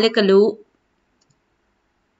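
A woman's voice finishing a phrase in the first half-second, then near silence with no cooking sound.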